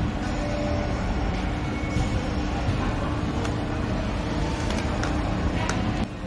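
Steady hum and murmur of a busy department store, with a few light clicks scattered through it.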